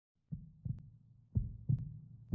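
Heartbeat sound effect: paired low thumps, a pair about once a second, the first starting about a third of a second in.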